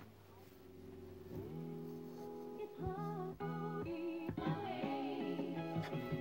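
A vinyl record playing music on a turntable. After a brief quiet start, held chords come in about a second and a half in, and a singing voice joins them about three seconds in.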